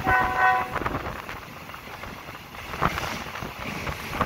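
A locomotive horn gives one short toot of under a second at the start, sounded on the approach to a level crossing. The train then runs on with a steady rumble and irregular clacks of the carriage wheels over the track.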